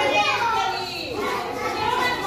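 A group of young children talking and calling out together while they play, with one voice gliding down in pitch over the first second.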